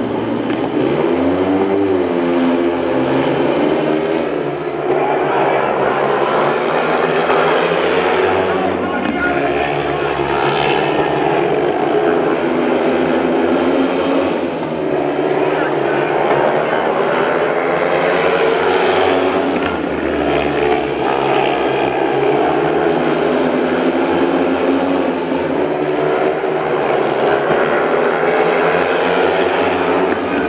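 Four speedway bikes' 500cc single-cylinder methanol engines revving hard off the start, then racing round the track, their pitch rising and falling as they accelerate and back off for the turns, and swelling loud several times as the pack passes close.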